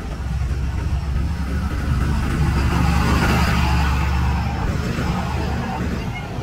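Road traffic with a motor vehicle passing close, its engine rumble and tyre noise swelling to a peak about halfway through and then fading.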